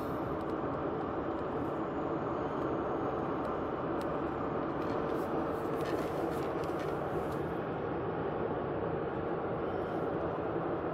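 Steady road and engine noise inside the cabin of a car driving at an even speed, with a faint steady hum.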